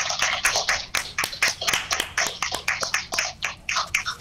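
A few people clapping by hand, brisk, uneven claps several a second.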